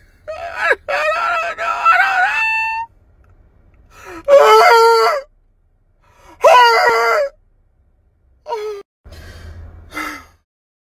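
A man letting out a string of wordless, drawn-out groaning and wailing cries, the loudest two about four and six and a half seconds in, with a short one near the end.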